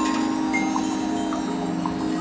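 A marching band's front ensemble playing soft sustained music: a held low chord that changes about two-thirds of the way through, with scattered high chime-like strikes over it.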